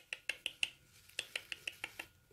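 A rapid series of light clicks, about six a second, in two runs with a short break in the middle.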